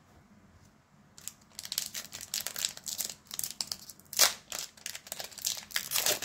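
Foil wrapper of a Pokémon TCG Paldea Evolved booster pack crinkling as it is handled and torn open: dense, irregular crackling starting about a second in, with the loudest crackle near the middle.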